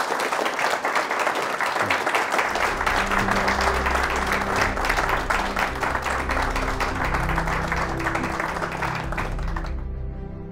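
Audience applause, with sustained low music notes entering about two and a half seconds in. The applause cuts off suddenly near the end, leaving only the music.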